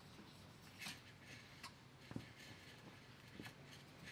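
Faint, scattered ticks and clicks of a mouse moving inside a glass jar as it squeezes through the trap lid's metal flap doors and steps onto loose seeds.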